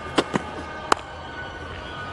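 Cricket bat striking the ball: one sharp crack about a second in, after two lighter knocks, over a steady background hum.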